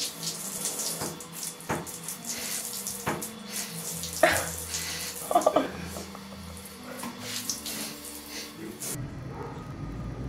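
Water running from a bidet tap into the bowl, with irregular splashing as a cat drinks from it; the water sound cuts off abruptly about nine seconds in.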